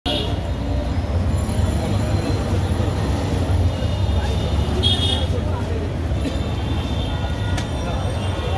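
Busy street ambience: a steady low rumble of road traffic with indistinct voices of people around, and two brief high-pitched tones, one at the start and one about five seconds in.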